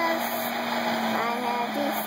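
Steady whirring hum and rush of a blacksmith's forge blower running, with no change in pitch or level.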